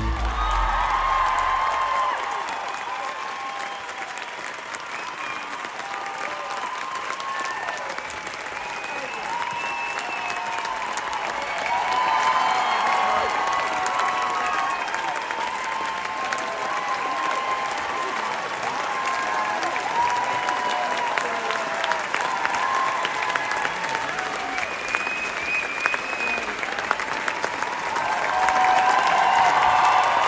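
A large theatre audience applauding at a curtain call, with one pair of hands clapping close to the microphone and cheering voices rising and falling over the clapping. It grows louder near the end.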